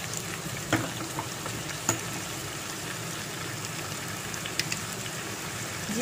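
Onions and tomatoes frying in hot mustard oil in a kadai: a steady sizzle, with a few light clicks now and then.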